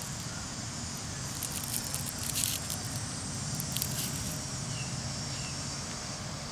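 Dry Dragon's Head (Moldavian balm) seed heads crackling and rustling between fingers in a short cluster of crackles from about a second and a half in to about four seconds, over a steady, high insect chorus.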